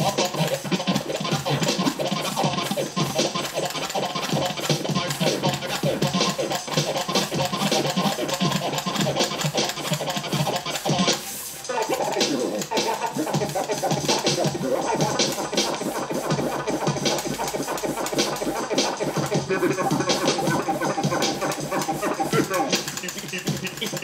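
DJ scratching a vinyl record on a turntable, with rapid back-and-forth strokes and a short break about halfway through.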